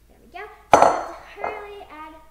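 A glass mixing bowl set down on a kitchen countertop: a loud, sharp clink with ringing about three-quarters of a second in, then a lighter second knock about half a second later. A child makes brief vocal sounds before and after.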